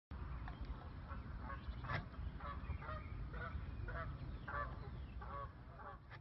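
Geese honking repeatedly, a short call roughly every half second, over a low steady rumble; it fades out near the end.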